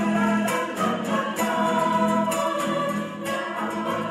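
A choir singing, holding sustained notes.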